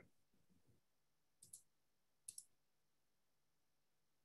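Near silence broken by faint computer-mouse clicks: one about a second and a half in, then a quick pair just under a second later.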